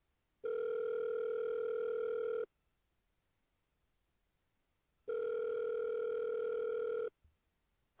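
Telephone ringing tone of an outgoing call heard on the caller's line: two steady rings, each about two seconds long, the second starting about five seconds in.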